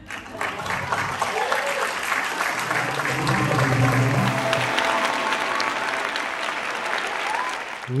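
Audience applauding, with a few voices in the clapping.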